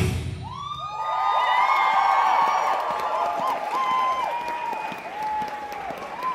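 Heavy-metal backing music cuts off at the start, then an audience cheers, whoops and claps. Many high voices whoop over one another and slowly die down.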